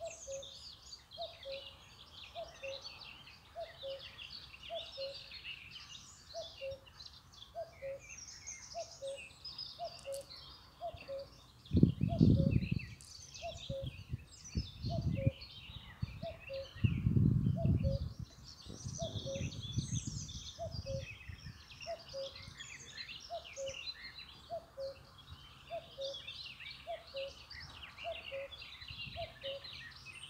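Birds chirping and twittering throughout, over a faint regular two-note pulse. A few low rumbles swell up in the middle, the loudest about twelve seconds in.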